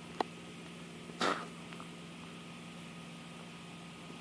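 Biting into the firm skin of a wild rose hip and chewing it: a sharp click just after the start and one short crunch about a second in, followed by a few faint chewing ticks, over a steady low hum.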